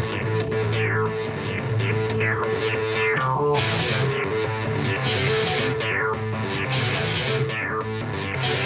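Driving guitar rock with no singing: guitars over a steady bass line, with many quick falling swoops in the high range.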